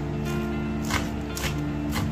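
Background music with steady held notes, over several sharp chops of a kitchen knife through lettuce and mint leaves onto a wooden cutting board.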